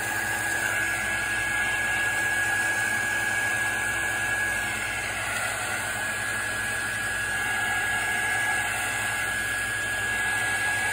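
Craft heat tool running steadily, blowing hot air to dry wet ink on watercolor paper: an even rush of air with a steady high whine from its fan motor.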